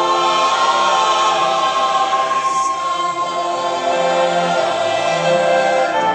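Church choir singing long, held chords with an instrumental ensemble accompanying, at a steady loud level.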